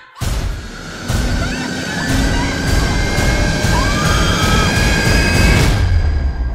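Film-trailer music and sound design: a sudden dark swell after a brief silence, then a dense building drone with sustained high tones and evenly spaced pulses, growing louder.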